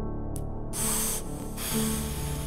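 Hip-hop beat intro: sustained synth notes with short bursts of hissing noise, about three in two seconds.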